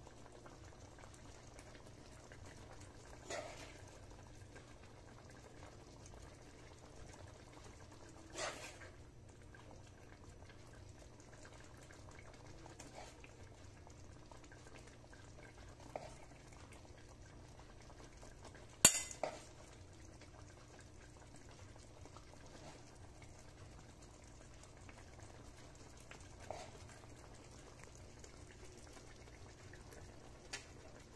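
A spoon clinking and scraping against a pan and a ceramic plate as curry is served over rice: a few scattered clinks over a faint steady background, the sharpest and loudest about two-thirds of the way through.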